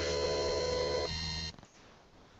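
A steady electronic tone of several pitches sounding together, with no rise or fall, that cuts off sharply about one and a half seconds in.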